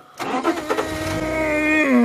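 A man imitating a lion's roar with his voice: one long, low moaning call that begins just after the start, holds a steady pitch and drops in pitch near the end.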